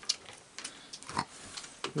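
Raccoons moving and feeding on a wooden deck: scattered light clicks and taps, with one short low animal sound about a second in.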